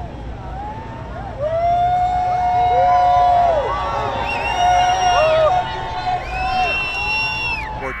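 A crowd shouting and cheering, many long held calls overlapping at different pitches, loudest from about a second and a half in. A low rumble of passing vehicles runs underneath.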